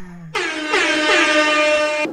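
Air horn sound effect: one long, loud blast that starts abruptly about a third of a second in and cuts off near the end.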